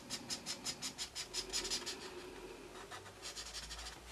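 Promarker alcohol marker nib scratching back and forth on paper in quick short strokes, several a second, while filling in a red area. The strokes thin out after about two seconds and pick up again in a short flurry near the end.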